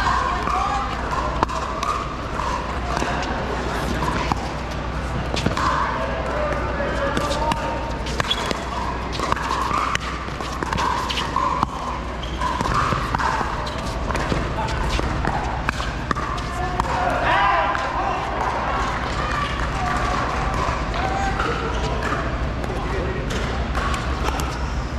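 Pickleball paddles striking a hard plastic pickleball, with the ball bouncing on the court: sharp pops scattered irregularly throughout, over a steady murmur of voices.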